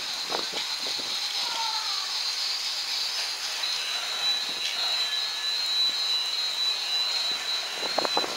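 Battery-powered Rail King toy train running around its plastic track: a steady high-pitched motor whine, becoming a clearer single tone about halfway through, with small clicks and rattles from the wheels on the track.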